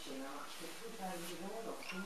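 Speech quieter than the main talk: a person talking in a small room, words not made out.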